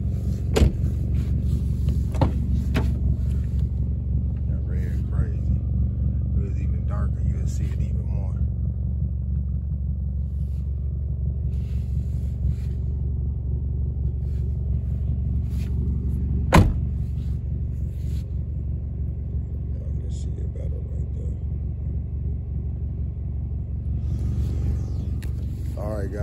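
A car engine idling steadily, with a few sharp knocks, the loudest about two-thirds of the way through.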